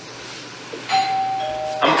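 Two-note electronic doorbell chime, a higher 'ding' followed by a lower 'dong', about a second in; both notes cut off together just before a man calls out in answer.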